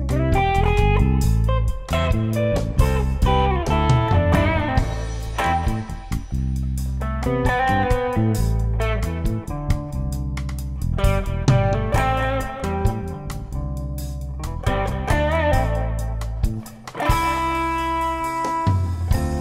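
Fender electric guitar playing a lead melody, some notes wavering with vibrato, over electric bass and a drum kit in a live trio.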